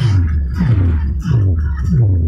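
Electronic dance music played loud through a DJ sound system, a deep booming bass note falling in pitch and repeating about every two-thirds of a second.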